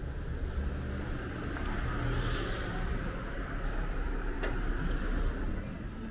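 A car passing by on the street, its tyre and engine noise swelling to a peak about two seconds in and then fading, over a steady low traffic rumble.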